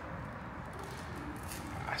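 Steady indoor background noise of a building lobby, with a brief faint tone a little past a second in; a man's voice begins at the very end.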